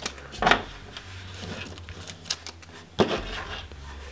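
Light plastic handling sounds as a black plastic sprue of miniature mortar parts is picked up and turned in the hands, with two sharper knocks, about half a second in and about three seconds in.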